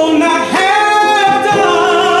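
Gospel choir singing through microphones, a man's lead voice among the other singers, holding a long note from about half a second in.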